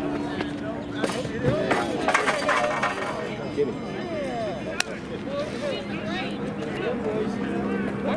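Open-air track meet ambience: scattered voices of people talking at a distance over a steady low hum, with a single sharp click about five seconds in.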